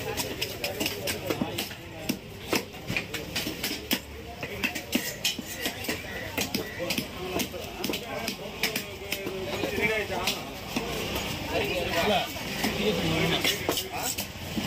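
Knife scraping the scales off a small grouper on a wooden chopping block: a quick, uneven run of short sharp scratchy clicks, with voices talking in the background.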